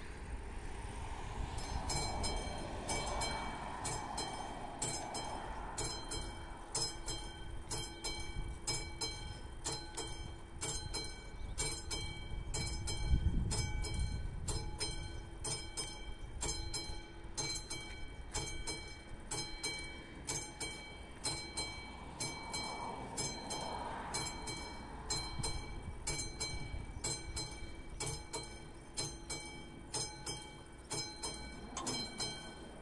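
Level-crossing warning bell ringing in steady repeated strikes, about two a second, starting about a second and a half in: the crossing has been activated for an approaching train. A low rumble swells up around the middle and fades again.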